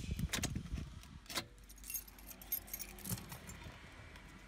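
Car keys and a remote fob jangling on their ring as the key is worked in the ignition switch, with a few sharp jingles in the first second and a half, then lighter ones.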